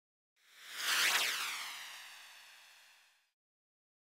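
A whoosh transition sound effect that swells to its loudest about a second in, then fades away over the next two seconds with a sweeping sheen.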